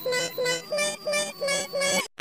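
Children's song with an electronically altered singing voice: a melody of short notes, about three a second, swapping back and forth between two pitches.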